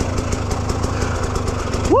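Enduro motorcycle engine idling steadily, its firing pulses even and unchanging, with a short shout of "woo" at the very end.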